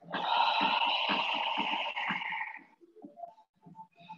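A voice holding one long drawn-out vowel, a stretched "All…", for about two and a half seconds before it stops.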